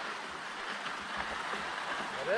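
Steady soft hiss of skis gliding slowly over packed snow, with wind on a helmet camera's microphone.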